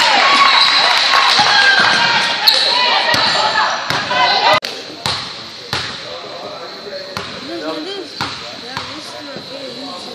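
Basketball bouncing on a hardwood gym floor, several separate bounces in the second half, with crowd voices in the gym. The crowd noise is loud at first and drops suddenly about halfway.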